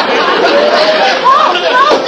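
Studio audience laughing, with a person's voice sounding over the laughter in the second half.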